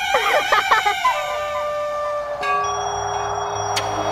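A woman's cackling laugh trailing off in the first second, then dramatic background score of long held synthesizer tones. A deep low drone enters about two and a half seconds in.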